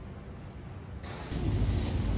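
Low, steady background noise, then about a second in a cut to outdoors, where wind blows on the microphone over faint street traffic.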